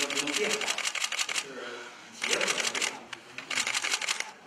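Press cameras' shutters firing in rapid bursts of clicks, three runs with short gaps between them, over a low murmur of voices.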